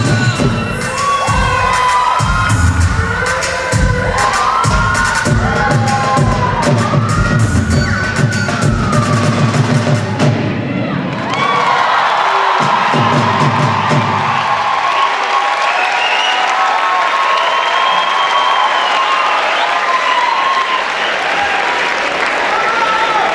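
Bhangra music with a heavy drum beat and shouts over it, stopping about halfway through; then the audience cheers and shouts as the beat fades out.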